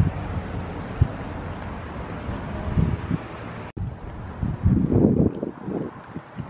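Wind blowing on a handheld camera's microphone, swelling in low gusts, with a momentary dropout about two-thirds of the way through.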